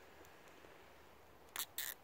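Nylon cable tie being pulled through its ratchet head around chicken wire: two short, sharp zips near the end, as the tie is drawn tight.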